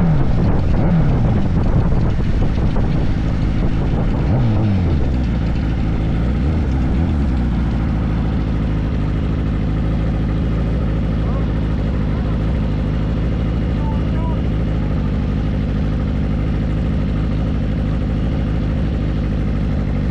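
Motorcycle engine coming off the throttle, its pitch falling in several drops over the first few seconds, then idling steadily at a stop.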